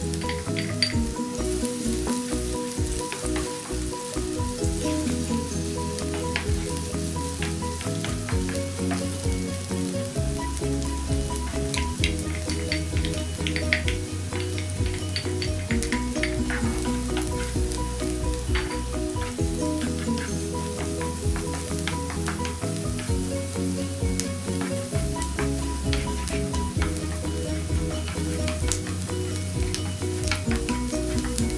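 Diced onion and minced garlic sizzling in hot oil in a nonstick frying pan, with scattered crackles and a wooden spatula stirring near the end. Background music with changing chords plays underneath.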